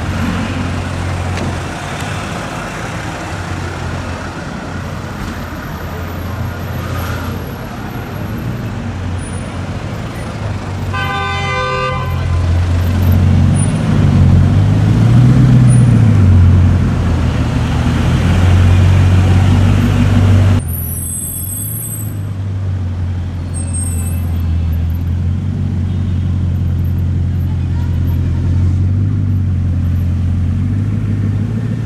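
Bugatti Chiron Sport's 8.0-litre quad-turbo W16 engine running at low speed: a deep steady rumble that grows louder in the middle, its pitch rising and falling as the revs change. A car horn gives one short toot about eleven seconds in.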